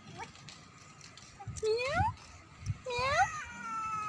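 A cat meowing: two short rising meows, then a longer drawn-out meow that slowly drops in pitch.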